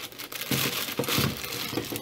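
Plastic instant-ramen packet crinkling as it is handled and tipped to slide the dry noodle block out into a pot of boiling water.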